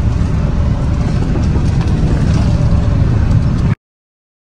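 Car engine and road rumble heard from inside the cabin, a steady low drone that cuts off abruptly near the end.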